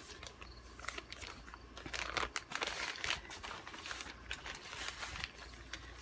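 Plastic packaging crinkling as a packaged synthetic hair topper is handled, in irregular crackles that are busiest around the middle.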